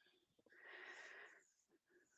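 Near silence, with one faint breath into a headset microphone about half a second in, lasting under a second.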